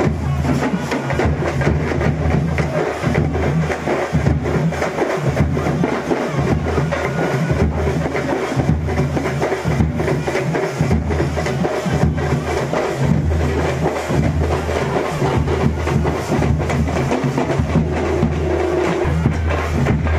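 Loud drum-led music: rapid, continuous percussion over a heavy, booming bass drum.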